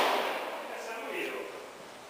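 The reverberant tail of a Mauser Modelo 1909 rifle shot, dying away steadily over about two seconds inside an enclosed shooting range.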